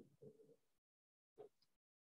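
Near silence, broken by two faint, brief sounds, one just after the start and one about a second and a half in.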